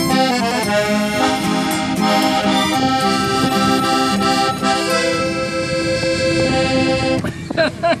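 Hohner piano accordion playing chords and melody over a strummed acoustic guitar, with a rack-held harmonica, in a lively traditional tune. The music ends about seven seconds in, followed by laughter.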